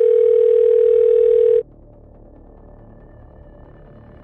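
Telephone ringing tone heard down the line while a call is being placed: one steady tone lasting about two seconds that cuts off suddenly, followed by a faint low hum on the line.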